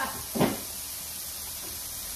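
Cubed tofu frying in oil in a pan, a steady sizzle, with one short knock about half a second in.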